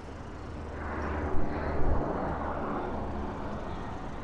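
A motor vehicle passing close by: its noise swells about a second in and fades toward the end, over a low steady rumble.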